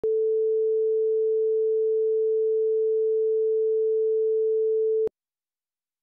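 A steady test tone over a broadcast slate and countdown leader, one unchanging pitch that cuts off suddenly about five seconds in, leaving dead silence.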